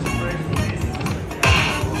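Lightning Link slot machine playing its bonus-feature music and electronic effects during free spins, with a louder, brighter burst about a second and a half in as another bonus coin lands and the free-spin count resets to three.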